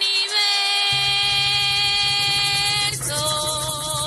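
Afro-Venezuelan tambor group starting a song: a woman's voice holds one long note for about three seconds, then moves to a new note with vibrato. Drums come in about a second in under an even, rapid shaking of maracas.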